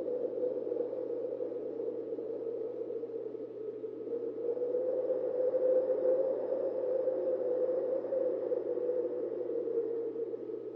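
Steady, hollow ambient drone from the soundtrack, a wind-like hum that swells slightly about halfway through.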